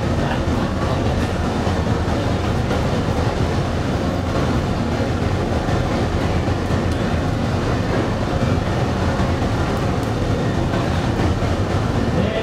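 Cremation furnace burning with its door open: its fire and burners make a steady, loud low rumble.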